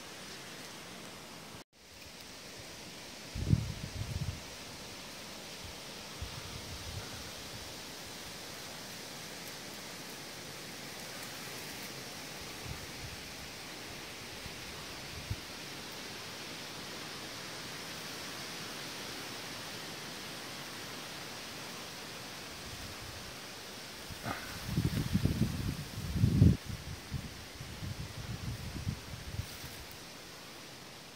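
Steady rustling hiss of breeze moving through leafy saplings and brush. Low thumps of wind or handling hit the phone's microphone about three and a half seconds in and again in a cluster over the last six seconds.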